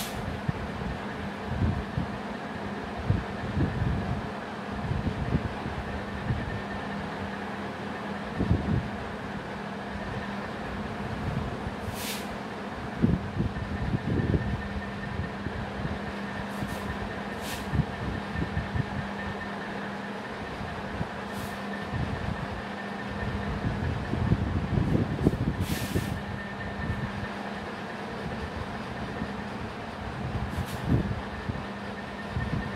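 Marker pen writing on a whiteboard, with soft irregular taps and strokes and a few short high squeaks, over a steady hum.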